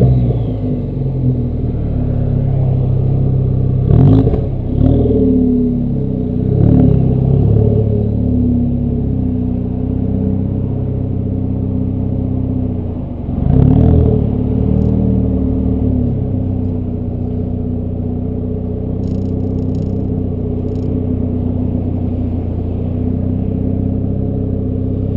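2013 Ford Focus ST's turbocharged 2.0-litre four-cylinder running at low rpm through a Borla cat-back exhaust as the car moves at low speed. A few brief rises in engine speed come at about 4, 6 and 13 seconds in, and the engine then settles to a steady low drone.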